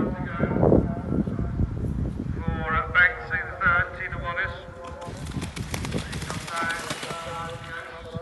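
Eventing horse galloping on a cross-country course, its hoofbeats thudding on the turf, while onlookers call out to it in drawn-out, wavering shouts about three seconds in and again near the end. A rushing noise sets in about five seconds in as the horse comes past close to the microphone.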